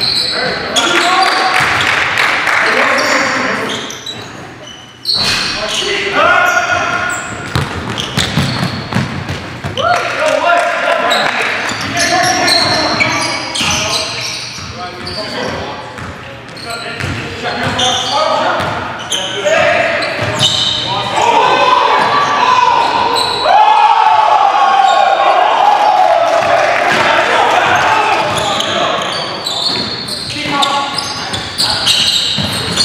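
Live basketball game sound in a gym hall: a basketball bouncing on a hardwood floor, sneakers squeaking, and players' indistinct shouts, with the hall's echo.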